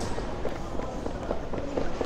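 Wheeled hard-shell suitcase rolling across a tiled floor as a person walks with it: a run of light, irregular clicks and knocks, with footsteps.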